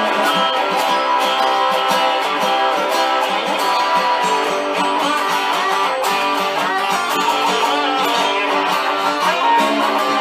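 Stratocaster-style electric guitar playing a blues, a continuous stream of picked notes and chords.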